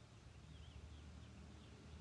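Near silence: a low steady room hum with a few faint, high bird chirps.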